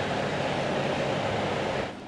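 Steady rushing noise of workshop machinery or moving air, cutting off suddenly near the end.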